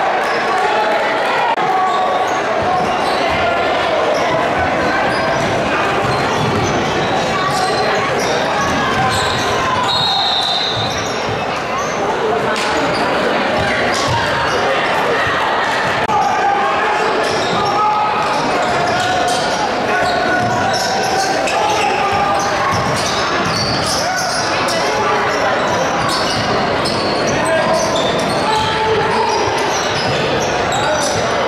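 Spectators' voices echoing around a large gymnasium, with a basketball dribbled on the hardwood court.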